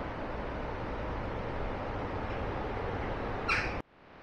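A steady rushing outdoor noise, then a single short harsh bird call near the end, cut off abruptly.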